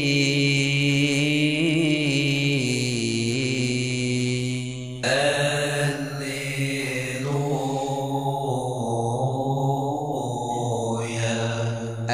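A man's voice chanting one long drawn-out vowel in melodic liturgical recitation, holding each note and moving in slow pitch steps, with a new phrase starting about five seconds in.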